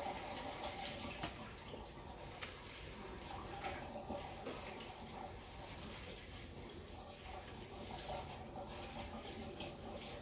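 Faint running water with a few light clicks and knocks.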